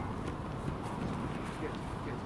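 Rugby players' footsteps running on a grass pitch: a series of short, soft footfalls.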